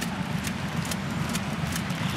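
Ice hockey arena during play: a steady murmur of the crowd with a few faint sharp clicks, typical of sticks and skates on the ice.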